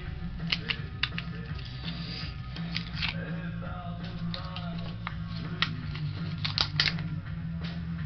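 Lip balm packaging being opened by hand: irregular plastic crinkles, snaps and clicks, a few sharper ones about three quarters of the way through, over a steady low background hum with music.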